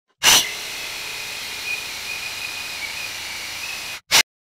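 Early-1960s metal-cased saber saw running and slowly cutting through angle iron. It starts suddenly about a quarter second in, runs steadily with a high, slightly wavering whine, and cuts off just before the end.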